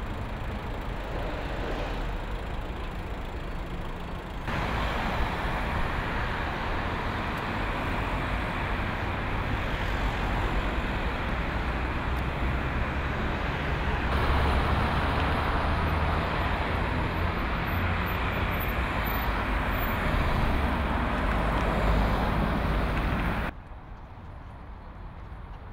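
City street traffic: cars driving through an intersection, a steady wash of road noise. The sound steps louder about four seconds in and again about fourteen seconds in, and drops off sharply just before the end.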